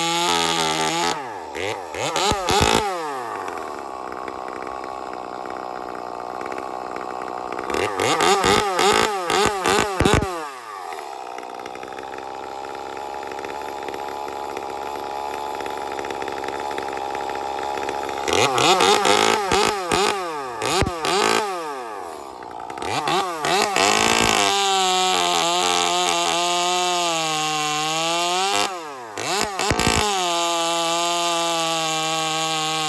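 Ported Echo 2511T top-handle two-stroke chainsaw with a 1/4-pitch bar and chain, idling and revved up in short bursts several times. Near the end it is held at high revs while cutting through a log, the chain being broken in.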